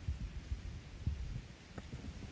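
Wind buffeting the microphone: an irregular low rumble of thumps, several a second, over a faint steady hiss.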